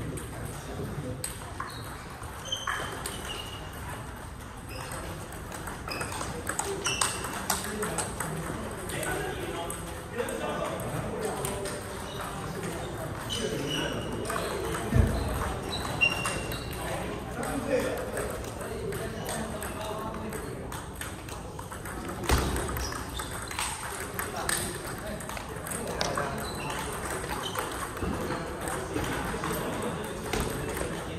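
Table tennis rallies: celluloid/plastic balls clicking off the tables and rubber-faced bats in quick exchanges, from several tables in play at once. Two louder low thumps stand out, one about halfway through and another some seven seconds later.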